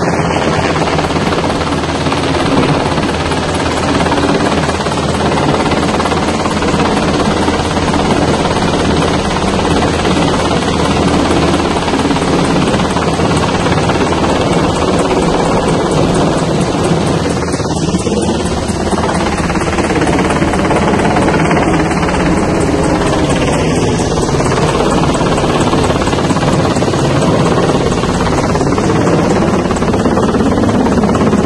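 Military helicopter flying low overhead, its rotor and turbine running loud and steady.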